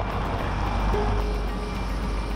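Background music under steady city street traffic noise.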